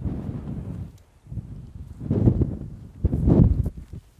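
Wind buffeting the microphone in gusts: an irregular low rumble that swells and drops, strongest about two seconds in and again shortly before the end.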